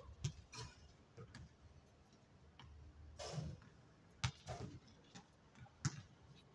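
Faint basketball play on a hard outdoor court: a basketball bouncing, heard as scattered, irregular sharp knocks, the loudest about four and six seconds in.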